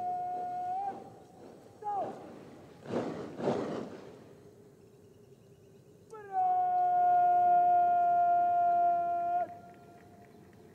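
Parade drill commands shouted as long drawn-out calls held on one steady pitch. The first ends about a second in and is followed by a short sharp executive word. About a second later come two loud crashes of the cadets' rifle and boot drill movement. Past the middle, another drawn-out command call holds for about three seconds before breaking off.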